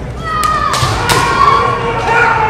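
Long, drawn-out kiai shouts from kendo fencers, several voices overlapping, with a few sharp knocks of shinai strikes or foot stamps on the wooden floor about half a second and a second in.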